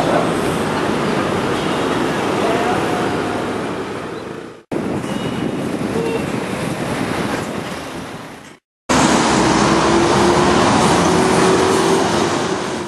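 Steady city street traffic noise, in three separate stretches broken by two short silent cuts, about a third and two thirds of the way through.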